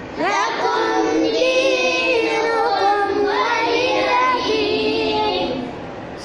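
Children's voices reciting the Quran in a sing-song chant, high-pitched and drawn out in long, wavering melodic notes.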